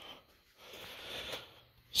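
A person breathing out close to the microphone, one soft exhale about a second long.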